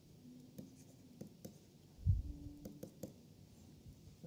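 Faint taps and scratches of a stylus writing on a pen tablet, with a soft low thump about two seconds in.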